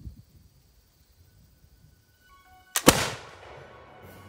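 A single black-powder shot from a cut-down reproduction 1763 Charleville flintlock musket, nearly three seconds in: a short sharp snap, then a split second later the much louder blast of the main charge, which dies away over the following second. The snap-then-blast is the flintlock's lock and priming flash setting off the charge.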